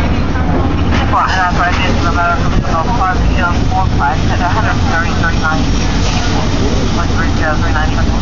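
A steady low engine drone runs throughout, the kind of motor noise that fills a fire scene, with indistinct voices talking over it.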